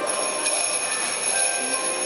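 Children's choir singing, with jingle bells ringing continuously over the voices as a steady high ringing.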